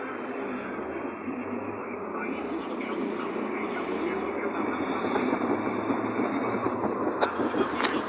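Steady car-cabin noise while driving, road and engine noise heard from inside the moving car, with a couple of sharp clicks near the end.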